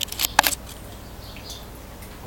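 A few sharp clicks and taps in the first half second, handling noise from the video camera being moved and zoomed out, then only a low steady background.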